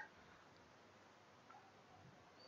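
Near silence: room tone, with a very faint click about one and a half seconds in.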